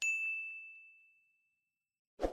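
Notification-bell sound effect: a single bright ding on one high tone that fades away over about a second and a half.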